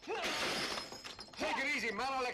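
Voices shouting and crying out in short bursts, over noisy crashing and breaking sounds in the first second or so.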